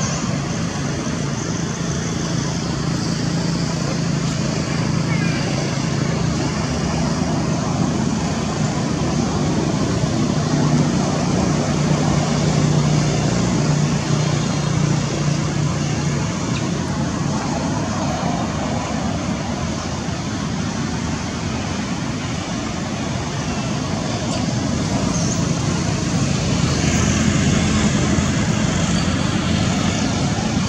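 Steady background rumble and hiss of engines or road traffic, swelling and easing slowly, with no distinct animal call standing out.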